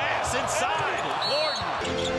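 Basketball game sound from the court: sneakers squeaking on the hardwood in many short chirps and the ball thudding, over the arena crowd. A brief high steady tone sounds about halfway through.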